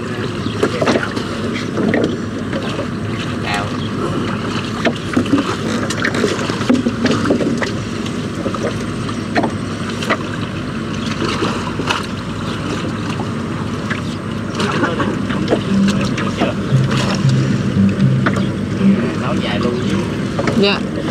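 River water slapping against a small wooden boat's hull among water hyacinth, with scattered knocks and rustles as the trap and a bamboo pole are handled among the plants. A low steady hum comes in for a few seconds near the end.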